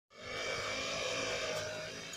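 Gas-powered brush cutter running at a steady speed, a continuous small-engine drone.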